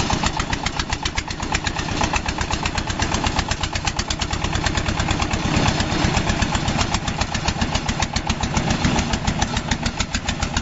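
Small self-propelled walk-behind corn harvester's engine running steadily under load as the machine cuts through corn stalks, with a rapid, even chugging beat.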